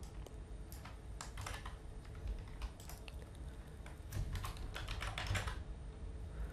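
Computer keyboard typing, quiet, in short scattered bursts of keystrokes as code is edited.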